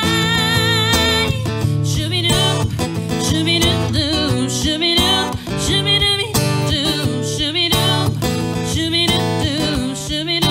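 A woman singing a song while strumming an acoustic guitar, live. A held note with vibrato ends just after the start, and her melody carries on over steady strummed chords.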